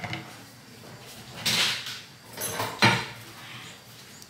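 Household handling sounds made out of shot: a short scraping rustle about a second and a half in, a briefer one after it, then a sharp knock a little before three seconds.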